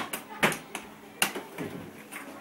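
A few sharp clicks and knocks, about four in two seconds, over faint voices.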